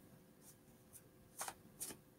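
Oracle cards being shuffled and handled: a few faint, sharp card snaps and clicks, the two clearest in the second half.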